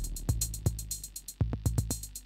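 Electronic music from analog synthesizers and a drum machine: quick, even hi-hat ticks over kick drum hits. The low bass drops out for about a second and comes back near the end.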